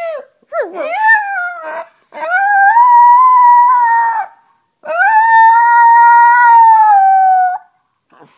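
Chihuahua howling: a few short wavering whines in the first two seconds, then two long, steady howls, of about two and three seconds.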